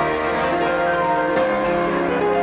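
Piano improvisation: chords struck and left ringing over one another, with a new chord about one and a half seconds in.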